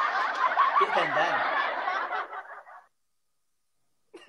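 People snickering and chuckling under their breath, dying away about three seconds in, then silence.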